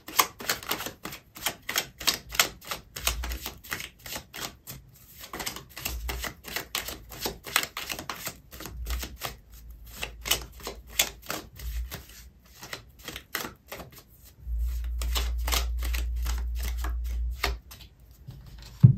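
Oracle card deck being shuffled by hand: a long, irregular run of quick card clicks and slaps, several a second, with short pauses. A low rumble runs under it for about three seconds near the end.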